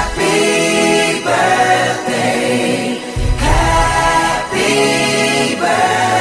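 Recorded song with choir-style voices singing long held chords. The bass drops out just after the start and comes back in about three seconds later.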